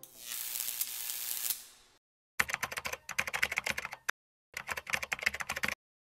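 Typing sound effect: two runs of rapid key clicks, the first starting a little over two seconds in and the second about half a second after the first stops. Before them, a hiss that fades away over the first two seconds.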